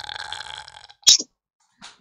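A man's drawn-out vocal sound, falling in pitch and trailing off into breath, followed by one short sharp click about a second in.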